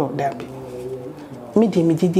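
A woman's voice holds a long, level hum or drawn-out syllable for about a second, then breaks into speech near the end.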